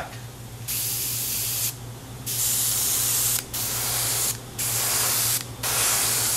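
Airbrush spraying a light mist of paint in five hissing bursts of about a second each, with short pauses between, over a steady low hum.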